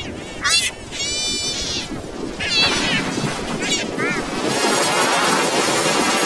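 Commercial soundtrack put through a heavy pitch-shifting effect. Voices become short, high, warbling glides and held chord-like notes over music in the first part, and the sound turns into a dense, noisy wash in the second half.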